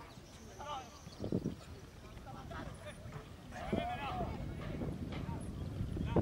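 Shouts and calls from players and onlookers at an outdoor football match over a low background rumble. A couple of dull thuds come about a second in, and a high shout about two-thirds of the way through.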